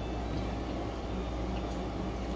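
Steady low hum of background noise, with no distinct events.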